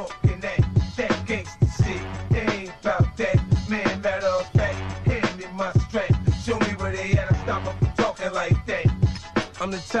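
Hip hop music from a DJ mix: a drum beat with deep bass, and vocals over it.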